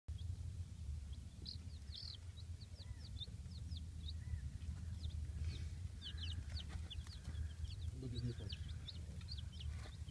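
A brood of chicks about a week old (Black Copper Marans, Barnevelder, Pearl Leghorn and Blue Langshan) peeping continuously: many short, high-pitched, falling cheeps, several a second, over a low steady rumble.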